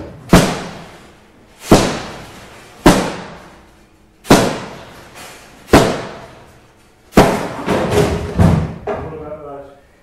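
Heavy blows struck on an old upright piano, each followed by a ringing decay from the instrument. Six single blows come about a second and a half apart, then a quicker flurry of several hits in the second half.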